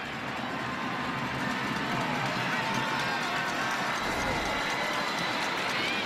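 Stadium crowd noise: a steady din of many voices between plays at a football game.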